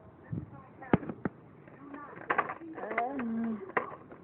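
Sharp clicks and taps of plastic toys and the phone being handled, a pair about a second in and a cluster in the middle, with a short voice sound, a hum that rises and falls, near the end.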